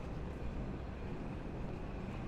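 Steady city street ambience: a low, even rumble of distant traffic with no distinct nearby events.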